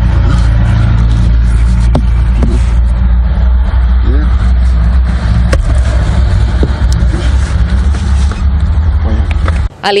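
Steady low rumble of a truck's diesel engine idling, heard from inside the cab, with a few sharp knocks as the cab's ceiling lining is pulled open. The rumble cuts off just before the end.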